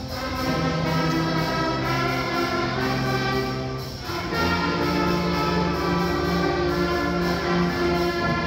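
Middle school orchestra and concert band playing together: strings and brass holding long sustained chords. There is a brief break in the phrase about four seconds in before the full ensemble comes back in.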